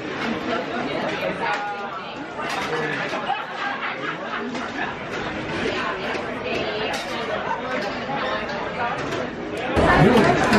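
Chatter of many diners talking at once in a restaurant, a steady murmur of voices with a few light clicks.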